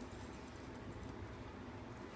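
Faint steady background noise with no distinct event: room tone.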